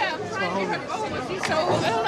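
Only speech: people chattering, their voices overlapping.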